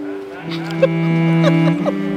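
Background score of slow, held low notes on bowed strings; the low note changes pitch about three-quarters of the way through.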